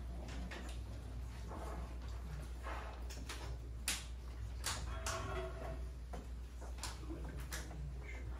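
Room tone in a quiet room: a steady low hum with scattered small clicks and knocks, and faint murmuring voices.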